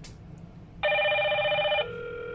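Hikvision video intercom ringing for an incoming call from the door station: an electronic ringtone of steady tones, with a louder, brighter ring lasting about a second from about a second in, then the softer tone again.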